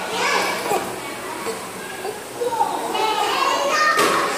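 Many young children's voices chattering and calling out at once, a busy kindergarten class, growing louder toward the end.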